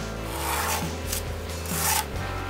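A pencil scratching along paper as a straight line is drawn against the edge of a steel ruler, with one stroke about half a second in and another near the end.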